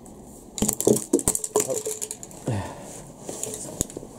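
Grey PVC pipe pieces knocking and clattering on a concrete floor as they are handled, a quick run of sharp knocks, some with a short hollow ring, then a few scattered clicks.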